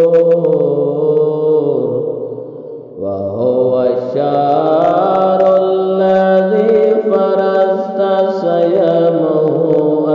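A single voice chanting an Arabic supplication for the month of Ramadan in long, drawn-out melodic phrases. It breaks off briefly about three seconds in, then carries on.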